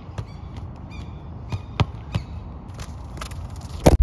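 A soccer ball being juggled with bare feet: a string of dull, irregularly spaced thuds as foot meets ball, the loudest just before the end, over steady low outdoor background noise.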